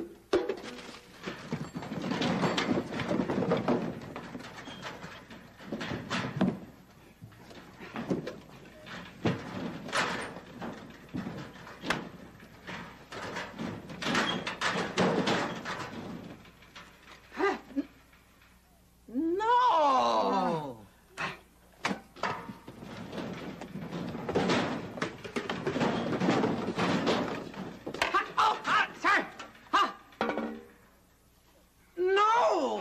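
Rummaging through a metal locker: repeated thuds, knocks and clattering as objects are pulled out and tossed onto a pile on the floor. About two-thirds of the way through, a short tone slides down in pitch.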